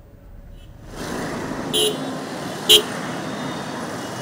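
Road traffic noise that sets in about a second in, with two short vehicle-horn toots about a second apart.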